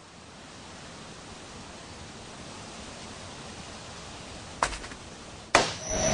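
A steady, even rushing hiss fades in over the first second, then a sharp crack about four and a half seconds in and a louder hit about a second later.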